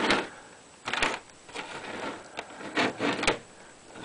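Plastic CD jewel cases being handled, giving a series of irregular clicks and clatters.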